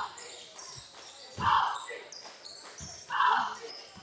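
A basketball bouncing on a hardwood gym floor: two loud bounces, about a second and a half apart, with voices in the gym.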